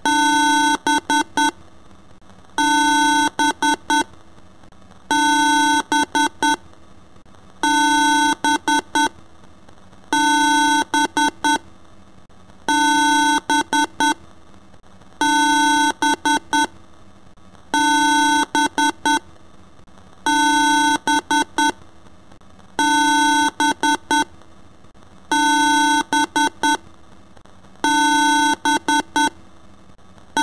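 Loud electronic beeping in a repeating pattern about every two and a half seconds: one longer beep followed by three or four quick short beeps at the same pitch, like an alarm.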